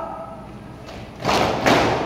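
A platoon of cadets stamping their boots in unison on a concrete floor as a foot-drill movement on command: two heavy stamps about half a second apart, echoing under a hall roof.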